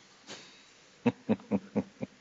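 Laptop keys being struck on a lectern: a soft tap early on, then five quick, sharp thuds at about four a second in the second half.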